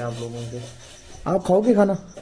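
A man's drawn-out, steady voiced sound while stretching, fading out about a second in. It is followed near the end by a louder, wavering vocal sound.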